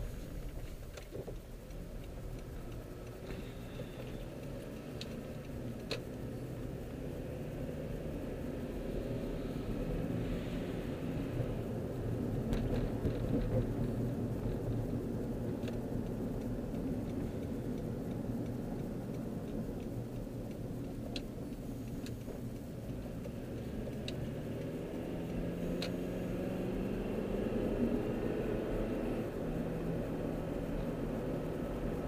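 Car engine and road rumble heard from inside the cabin while driving. The engine note climbs as the car accelerates near the end, and a few light clicks sound now and then.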